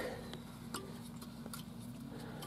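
A few faint, light clicks and ticks of hands handling the old engine's parts, over a faint steady low hum.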